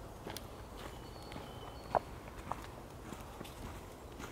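Black woodpecker foraging in leaf litter and rotten wood on the ground: scattered light taps and rustles, with two sharper knocks about two seconds in, half a second apart. Faint thin whistled notes of another bird sound in the background.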